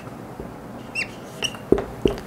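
Whiteboard marker squeaking against the board as words are written: a few short, high squeaks about a second in and again shortly after, with a soft knock near the end.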